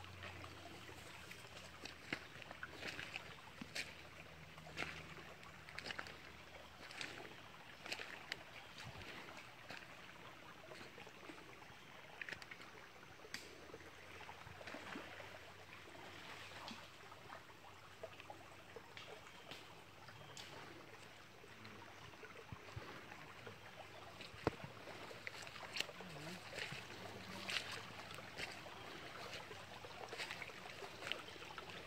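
Faint trickle of a shallow spring-fed stream, with scattered light clicks and snaps of footsteps through twigs and leaf litter.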